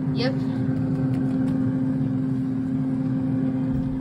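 Air fryer running while it cooks, its fan giving a steady hum with one strong tone over a low rumble.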